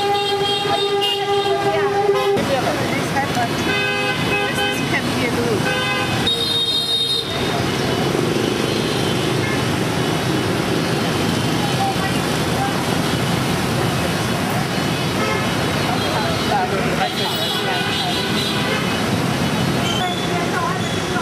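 Busy motorbike and car street traffic with vehicle horns honking: a long steady horn blast for about the first two seconds, shorter honks around four and six seconds in and again near the end, over constant traffic noise.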